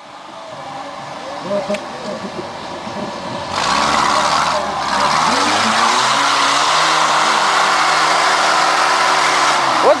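Trial jeep's engine working as it climbs a rocky slope. It runs at low revs at first, then about three and a half seconds in picks up sharply, rising in pitch, and holds at high revs.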